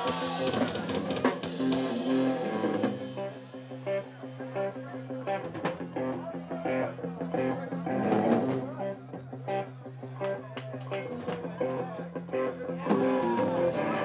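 Live ska-punk band playing an instrumental passage on electric guitars, bass and drum kit, before the vocals come in.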